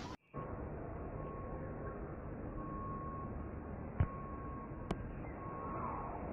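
Steady outdoor background noise, with a thin high tone that comes and goes four times and two faint clicks in the second half.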